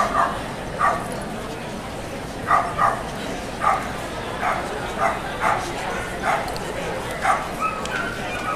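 A dog barking in short, sharp yaps, about ten of them at irregular intervals of half a second to a second, some in quick pairs.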